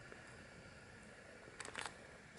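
Near silence in still open air, with a faint brief rustle or breath near the end.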